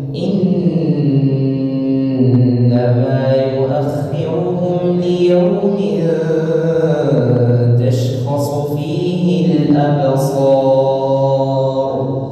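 A man reciting the Quran in a slow melodic chant over a mosque loudspeaker system: long held phrases that rise and fall in pitch, with a heavy echo.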